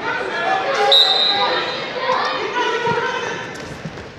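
Voices calling out across a large, echoing gymnasium during a wrestling bout, with a short high squeak about a second in and a few dull thuds later on.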